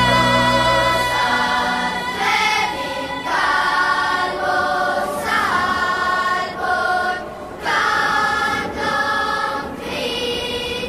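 Background music: a choir singing long held chords, with a low accompaniment that drops out about a second in.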